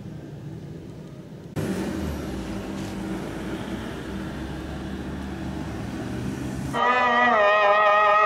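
Road traffic noise that starts abruptly about a second and a half in, after a quieter low hum. Near the end, a louder melodic chanted Islamic recitation begins, its voice wavering and sliding in pitch.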